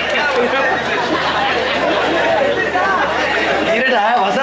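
Overlapping speech: several voices talking at once in a loud, continuous jumble.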